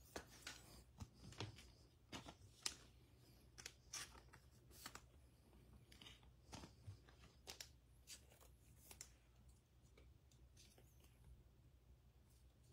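Faint scattered rustles and light clicks of trading cards being handled and slid into plastic sleeves, over a low steady hum.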